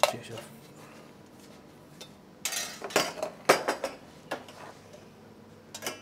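Stainless-steel pans and a small chinois clanking against each other and on the hob as they are set up: one sharp clank at the start, then a run of clinks and knocks about two and a half to four seconds in, and another just before the end.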